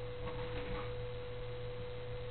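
A steady electrical hum with a constant single mid-pitched tone running under it, and nothing else standing out.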